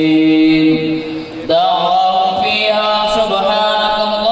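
A man's voice chanting a naat unaccompanied into a microphone, drawing out long held notes; it dips briefly just over a second in, then carries on at a higher pitch.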